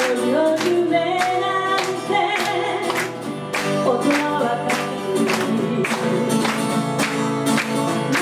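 A woman singing into a microphone, accompanied by an acoustic guitar strummed on a steady beat of about two strokes a second.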